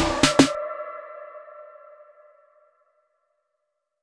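Electronic outro music ending with a last couple of hits about half a second in, its final chord ringing on and fading away over the next two seconds.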